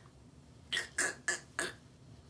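A woman laughing: four short, breathy bursts of laughter in quick succession, starting under a second in.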